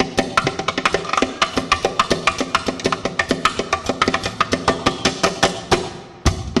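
Steel-string acoustic guitar played fingerstyle with fast percussive taps and slaps on its wooden body, a steady stream of sharp clicks over picked notes.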